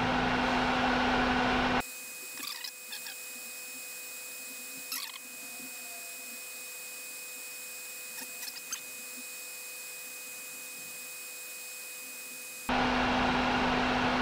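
Steady background hum and noise that drops away abruptly about two seconds in, leaving a faint hiss with two thin steady tones, then returns abruptly near the end. A few faint clicks of small trimmer potentiometers being handled at the circuit board are heard in the quiet stretch.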